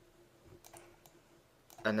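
A few faint computer mouse clicks about half a second in, as a 3D skull model is turned on screen.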